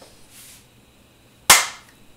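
A single sharp slap of two people's palms meeting in a high-five, about one and a half seconds in, with a short fade after it.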